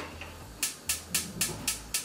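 Gas range burner's spark igniter clicking repeatedly, about four clicks a second, starting about half a second in.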